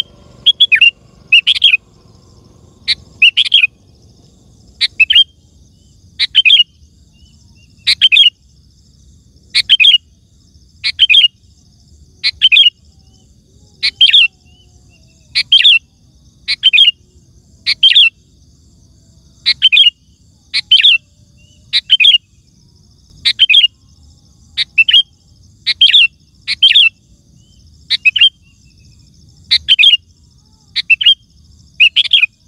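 Sooty-headed bulbul singing: short, loud phrases of a few quick notes, repeated roughly every one to two seconds.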